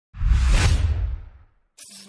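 An intro whoosh sound effect with a deep low end. It swells in quickly and fades away over about a second, and a short, faint sound follows near the end.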